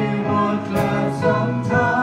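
A group of voices singing a Christmas carol with a live band of keyboards, drums, bass and guitar, with a drum or cymbal strike about once a second.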